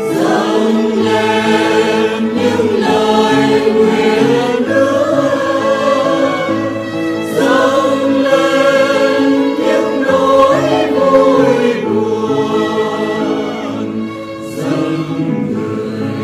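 A choir singing a Vietnamese Catholic offertory hymn about offering bread and wine, in sustained, continuous phrases.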